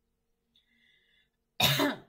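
A woman coughs once, loudly and briefly, near the end, from a scratchy throat.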